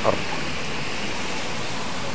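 Steady hiss of heavy rain on a wet street.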